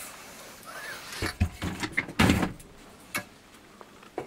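Ladder to a motorhome's overcab bed being handled and hooked into place, giving several knocks and clatters, the loudest about two seconds in.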